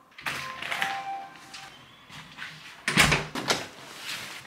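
Apartment front door being unlocked and opened, then two loud thuds about three seconds in as it is shut.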